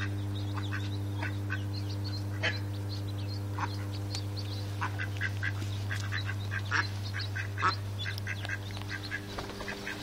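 Mallards and their ducklings calling: many short, high calls scattered throughout, over a steady low hum.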